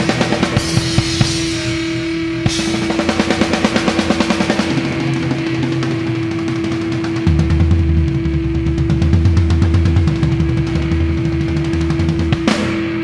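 Live hardcore punk band playing an instrumental passage with no vocals: a drum kit hammering out fast rolls over one steady held note. About seven seconds in, a heavy low bass-and-guitar part comes in.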